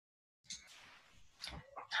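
Near silence broken by a few faint, brief noises: a short click about half a second in and two small sounds near the end, just before a woman starts speaking.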